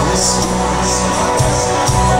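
Live band music: strummed guitars over sustained bass notes, with a steady beat.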